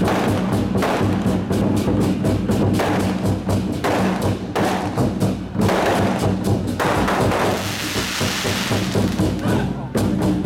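Chinese war drums: several large red barrel drums and a big flat drum beaten hard and fast with sticks, in dense rolls and strikes with a deep booming resonance. About eight seconds in, a hissing wash rises over the drumming for a couple of seconds.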